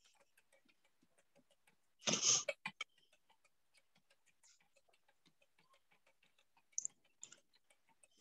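Faint, rapid, regular ticking runs throughout. About two seconds in there is a brief, louder noise, and a couple of sharper clicks come near the end.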